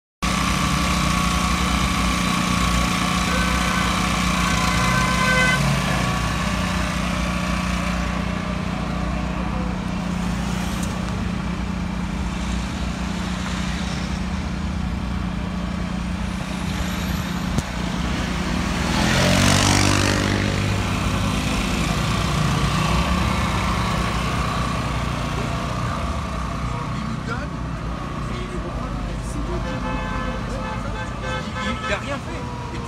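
Road traffic: a steady engine drone, with one vehicle passing close by about two-thirds of the way through, rising and falling as it goes past.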